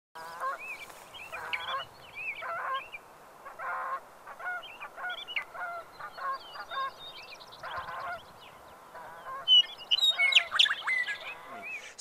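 Geese honking repeatedly in a run of short, irregular calls. From about nine and a half seconds, sharper and higher bird calls join in and are the loudest part.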